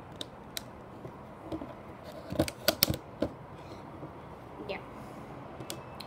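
Light clicks and taps of rubber bands being stretched onto and snapped around the plastic pegs of a Rainbow Loom, irregular, with a quick cluster of them about two to three seconds in.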